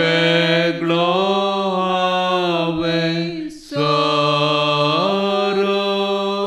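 A single voice chanting a devotional hymn in long held notes. There are two sustained phrases with a short break about three and a half seconds in, and the pitch steps up partway through the second.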